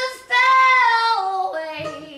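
A woman singing blues with two long high held notes, the second one sliding down in pitch. Plucked strings and upright bass come back in near the end.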